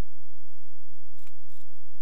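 Light aircraft engine idling as it taxis, a low, steady throb picked up through the cockpit intercom. Two faint clicks come a little past a second in as the headset is handled.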